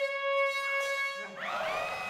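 A woman's voice holding one steady sung note through a powerful amplifier, aimed at a wine glass to shatter it by resonance. A little over a second in, the note gives way to a noisy burst with rising shouts.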